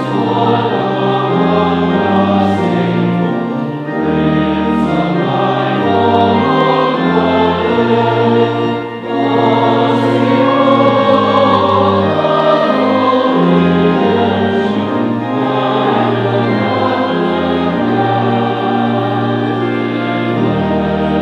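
Choir and congregation singing a hymn, accompanied by a pipe organ whose held bass notes change in steps under the voices.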